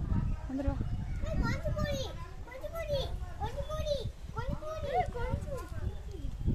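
A young child's voice, high-pitched, making a string of short sing-song syllables that rise and fall, over a steady low rumble.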